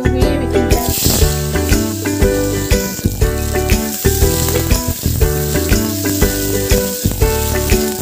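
Jujubes sizzling in hot oil in a pan, the sizzle starting about a second in and staying steady, under background music with a steady beat.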